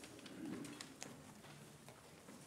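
Faint footsteps and shuffling of children walking up the aisle, with a few small knocks and a brief soft, low murmur about half a second in.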